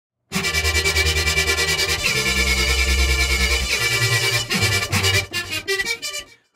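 Xfer Serum software synth patch playing chords over changing bass notes, its oscillator using a wavetable made from an imported image. LFOs chop the tone into a fast, even stutter.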